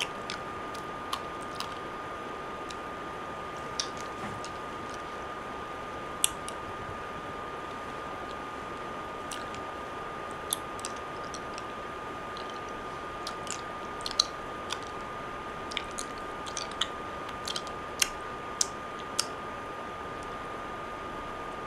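Scattered small wet mouth clicks and smacks, sparse at first and coming more often in the last few seconds, over a steady high-pitched tone.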